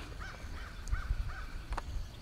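A bird calling outdoors: about five short, arched notes in quick succession over the first second and a half.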